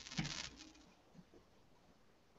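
Near silence: room tone over an online call, with a brief faint sound in the first half second.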